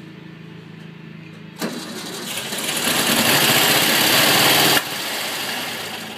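1964 Volkswagen Beetle's air-cooled flat-four engine running after more than ten years in storage. It is revved hard from about a second and a half in, climbs to a held high rev, then drops back sharply near five seconds in and settles lower.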